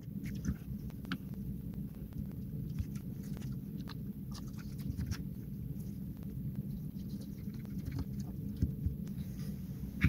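Faint, scattered small clicks and scrapes of fingers handling a small circuit board and screwing its standoffs tight by hand, over a low steady background hum.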